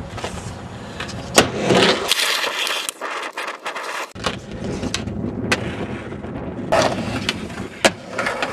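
Skateboard wheels rolling over skatepark ramps and flat ground, with a few sharp clacks of the board striking the surface: one a bit over a second in, one midway and one just before the end.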